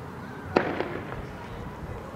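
A single sharp, loud bang with a short echo, followed by a smaller crack about a quarter second later.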